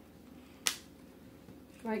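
A single sharp click about two-thirds of a second in, from a marker being handled at the table, followed near the end by a woman starting to speak.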